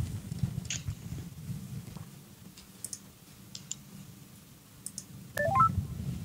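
A few faint clicks, then near the end a quick rising run of short electronic beeps: a call-connecting tone as the remote guest's call is put through.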